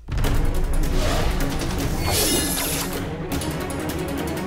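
Action film score with fight sound effects: a rapid series of hits and impacts, and a brief rushing noise about two seconds in.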